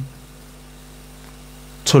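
Steady low electrical mains hum fills a pause in a man's speech. His voice starts again near the end.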